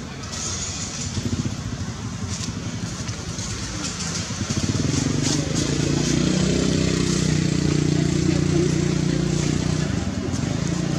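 A motor vehicle engine running nearby, getting louder about halfway through and then holding a steady pitch.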